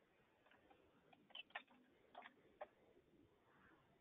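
Faint computer keyboard keystrokes: a short run of about half a dozen clicks in the middle, typing a search term, over near-silent room tone.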